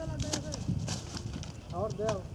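Background voices of people talking, with several sharp, irregular clicks and knocks.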